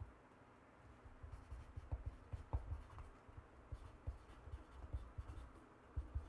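Faint hand-writing on a sheet of paper lying on a wooden tabletop. Irregular short scratchy strokes with soft low knocks start about a second in.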